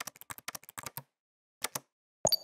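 Keyboard typing sound effect: a quick run of about ten key clicks in the first second, then two more clicks after a short pause.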